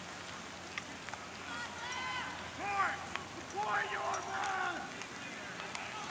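Distant shouting voices across a rugby pitch: a few short calls about two seconds in, then a longer held shout around the fourth second, over a steady hiss.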